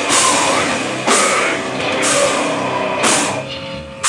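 Live hardcore metal band playing at full volume, heavy drums with a cymbal crash about once a second. The sound thins for a moment near the end before the next hit.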